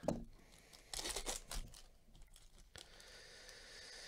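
Silver foil wrapper of a baseball card pack being torn open by gloved hands: a sharp snap at the start, crinkling and tearing loudest about a second in, then a softer steady rustle near the end.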